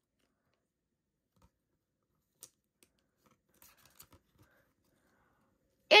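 Near silence broken by a few faint clicks and rustles of a trading card being handled. The loudest click comes about two and a half seconds in, with a small cluster just under a second later.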